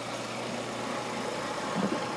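2006 Nissan Altima's 2.5-litre four-cylinder engine idling steadily with the hood open.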